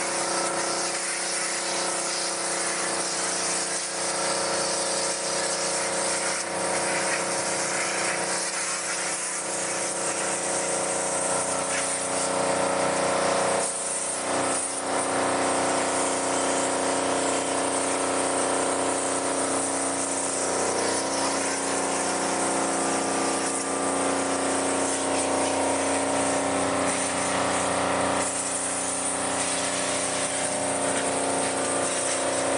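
High-pressure water pump of a mobile steam car washer running steadily with a hum, under the hiss of the water jet from the lance spraying a car. The spray briefly dips twice near the middle.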